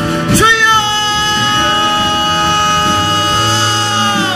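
A Korean worship song sung with band accompaniment. The voices hold one long note from about half a second in to the end.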